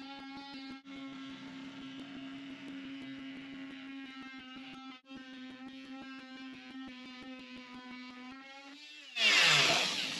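Cordless oscillating multi-tool running with a steady hum while cutting through a boat's galley countertop. Near the end the sound grows much louder and rougher and its pitch sags.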